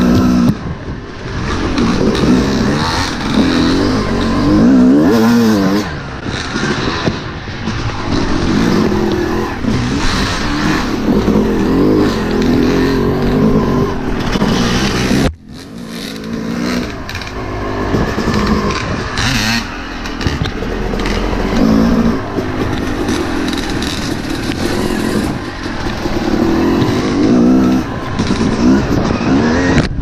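Yamaha YZ250 two-stroke dirt bike engine revving up and down repeatedly while riding a trail. The sound drops out sharply for a moment about halfway through, then comes back.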